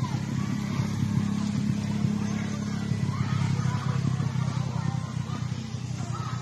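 A steady low engine hum with faint voices behind it.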